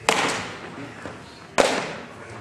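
Baseball bat cracking a ball off a batting tee, with a reverberant ring. A second sharp crack about one and a half seconds later.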